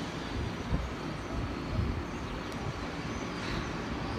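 Steady low rumble of distant city noise, without clear separate events.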